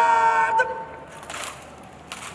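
A long, loud shouted drill command, held on one pitch, ends about half a second in. It is followed at about a second and a half by a short rattle of the honour guard's rifles coming up to present arms.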